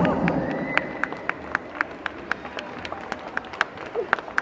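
A few people clapping their hands in a large reverberant hall at a steady pace of about four claps a second, with voices dying away in the first half second.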